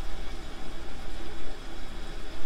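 Steady background hiss with a low, constant hum and no speech.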